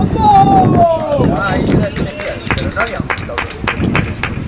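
Men shouting on a rugby pitch: one long drawn-out shout falling in pitch over the first second, then shorter calls and several sharp short sounds.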